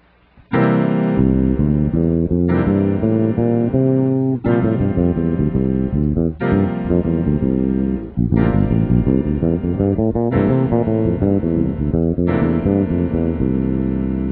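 Electric bass playing lines from the Mixolydian scale over a dominant seventh chord, with a fresh chord sounding about every two seconds.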